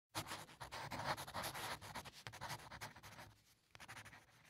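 Faint scratching of chalk writing on a chalkboard, a quick irregular run of short strokes that thins out after about three seconds, with a few last strokes near the end.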